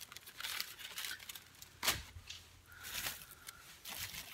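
Rustling and crinkling of plastic packaging being handled, with a sharp knock a little under two seconds in and a few softer knocks.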